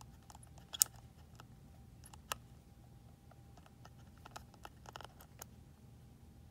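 A plastic chip resetter clicking and scraping against the maintenance box's chip contacts as it is lined up and pressed on: scattered faint clicks, the sharpest about a second in, another about two seconds in, and a cluster near the end.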